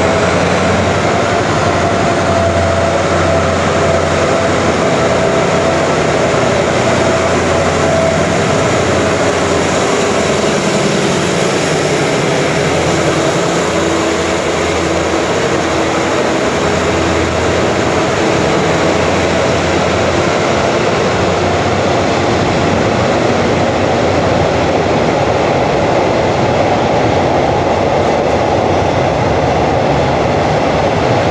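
Diesel-electric locomotive (SRT Alsthom ALS class) hauling a passenger train out of the station, its engine working with a steady tone through the first third. It passes close about halfway through, then the passenger carriages roll past with steady wheel and rail noise.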